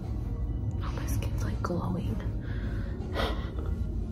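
Soft whispering and breathy voice sounds over quiet background music.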